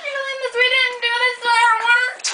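A high female voice holding one long sung or moaned note, wobbling slightly and drifting a little lower.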